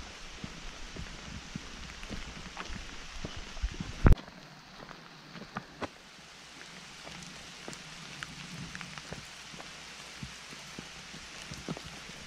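Steady rain falling, with scattered drops ticking close by. A single sharp, loud knock about four seconds in.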